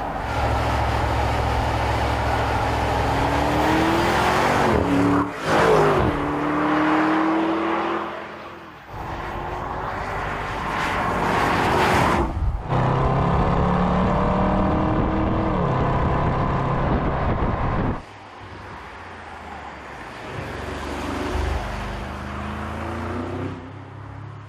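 Audi SQ8's V8 engine accelerating and driving past, its pitch rising and falling over tyre and road noise, in several segments joined by abrupt cuts; quieter and more distant near the end.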